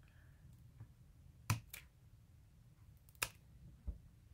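A few short, sharp clicks from small craft items being handled on a tabletop as a paper flower is picked up. There are two clicks close together about a second and a half in and another pair past three seconds.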